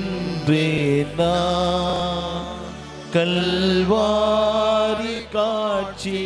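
A man singing a slow Tamil devotional chant in long held notes with a wavering pitch, over a low sustained accompaniment.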